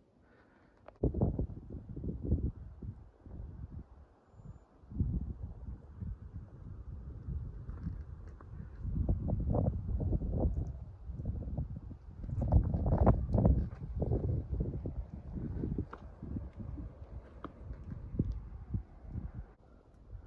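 Low, irregular rumbling and knocking on the camera's microphone from wind and handling as the camera is carried over rocks. It surges in uneven gusts, loudest about a second in and again from about twelve to fourteen seconds in.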